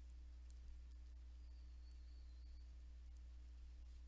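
Near silence: room tone with a low, steady electrical hum.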